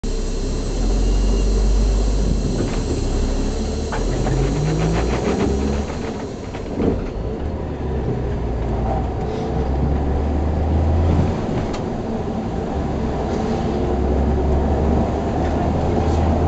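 Inside an SOR C 9.5 diesel bus on the move: the engine runs with a deep drone over cabin rattle. The engine note rises about four seconds in, there is a sharp knock about seven seconds in, and the drone swells and falls as the bus turns and pulls away.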